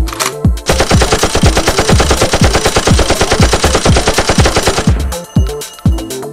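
Rapid automatic gunfire sound effect, starting a little under a second in and stopping about a second before the end, over background music with a heavy beat.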